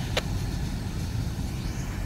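Low, steady rumble of a loaded freight train's hopper cars rolling away down the track, with a single short click about a fifth of a second in.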